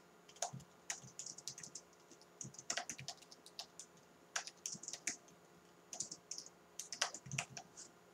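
Computer keyboard typing: scattered, irregular keystrokes in short runs with brief pauses, fairly quiet.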